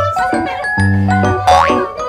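Bouncy background music with a repeating bass pattern and a light melody, and a quick rising glide sound effect about one and a half seconds in.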